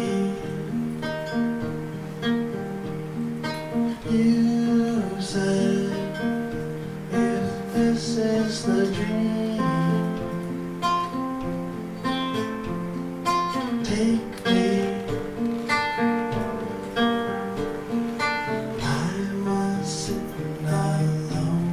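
Acoustic guitar played live as part of a song, its notes ringing on over regular plucked and strummed onsets.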